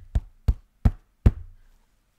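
Four sharp knocks in quick, even succession as fingers poke the inside of a stiff moulded early-1950s clam-shell hat. The hard sound shows how rigid the shell is: "insanely hard".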